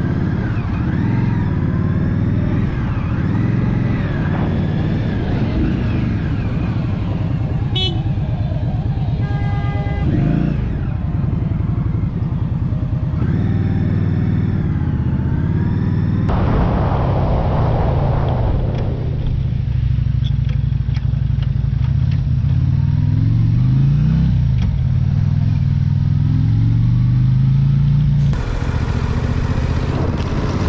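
Motorcycle engine running while riding in freeway traffic, its pitch rising and falling with throttle and gear changes, over road and wind noise.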